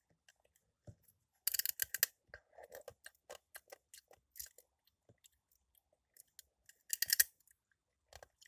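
Ice cubes bitten and crunched between teeth close to the microphone: two sharp crackling bursts, one about a second and a half in and one near the end, with scattered small clicks and cracks between.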